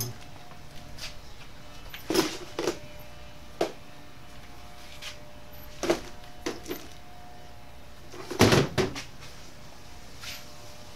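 Scattered knocks and clatter of hard objects being handled and set down, with the loudest cluster of knocks about eight and a half seconds in.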